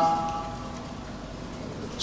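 The end of a man's long chanted note through a loudspeaker system, dying away over about half a second, then a low steady hiss of the amplified hall with no voice.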